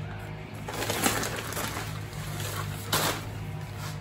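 Rustling as bunches of rhipsalis cuttings are picked up and handled, loudest about a second in, with a brief louder rustle near the end, over steady background music.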